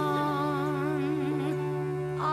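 A woman singing one long held note with a wavering vibrato, over a steady sustained chord in the backing.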